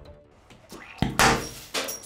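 A piece of cesium metal dropped into a glass dish of water reacts explosively about a second in: a sharp crack, then a short noisy burst of spray, and a second smaller pop near the end.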